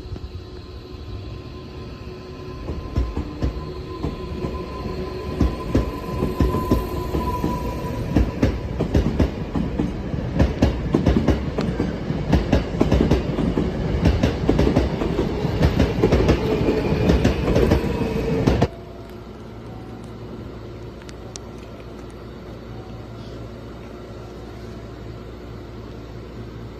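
Hankyu 7000 series electric commuter train running along the platform, growing louder, with rapid clacking of wheels over rail joints and a whine. It stops abruptly about 19 seconds in, leaving a quieter steady hum.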